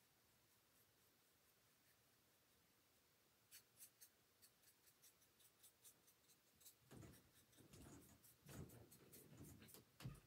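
Faint scratching and light ticking of a small paintbrush stroking and tapping a small wooden craft piece, beginning a few seconds in and growing busier near the end with handling of the pieces. The first few seconds are near silence.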